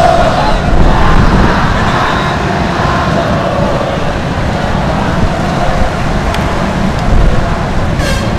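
Large football stadium crowd making a dense, steady din, heavy in the low end, heard loud from within the stands.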